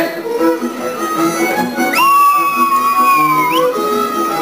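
Żywiec highland folk band music led by fiddles, playing a dance tune with a quick line of short notes over a bass. About halfway through, a single high note is held for over a second, sliding up into it and dropping off at the end.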